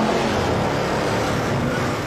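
Supercharged, alcohol-burning 8.2-litre Chevy V8 held at high revs in a burnout, the rear tyres spinning and smoking; a loud, steady blend of engine and tyre noise.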